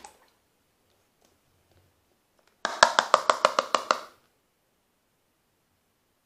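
A quick run of about ten sharp percussive taps with a hollow ringing tone, lasting about a second and a half, beginning about two and a half seconds in.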